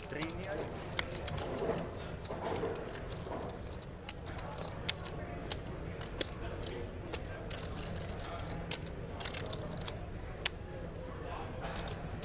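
Indistinct chatter of many voices in a large room, with frequent sharp clicks scattered through it at irregular intervals.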